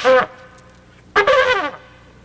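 Trumpet blown by a learner: the end of one blast at the start, then a second short blast a little over a second in, each note sagging down in pitch as it ends. "Getting pretty loud."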